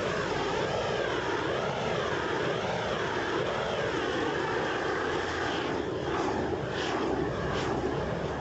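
Propane torch burning with a steady roar while heating a heat-shrink pipe sleeve. The tone swells and sways up and down about once a second as the flame is swept around the pipe.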